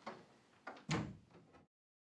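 An interior door being handled and shut: a couple of light clicks, then a heavier thump about a second in. The sound cuts off suddenly just after.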